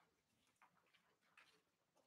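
Near silence with a few faint, scattered small clicks and rustles, as of musicians settling on stage, handling chairs and music sheets.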